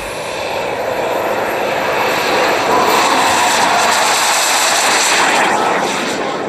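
Model jet turbine of a radio-controlled F-104S Starfighter running at high power on its takeoff roll: a loud hissing jet sound with a high whine that climbs over the first three seconds as the engine spools up, then holds steady.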